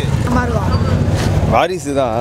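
Men's voices shouting in a loud crowd over a steady low rumble.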